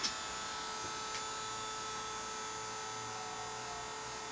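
Three stepper motors driven by a grblShield running grbl, turning together at a steady step rate on a G0 rapid move of the X, Y and Z axes, giving a steady whine made of several fixed tones.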